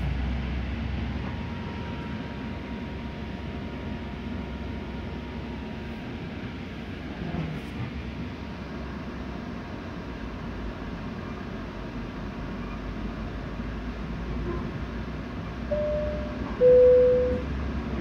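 Low, steady rumble inside a GO Transit passenger coach rolling slowly over the station approach tracks. Near the end, the train's public-address system plays a two-note falling chime, the signal that an announcement follows.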